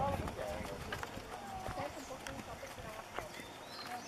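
A horse's hooves clip-clopping irregularly on a dirt path as it pulls a two-wheeled cart, with faint voices behind.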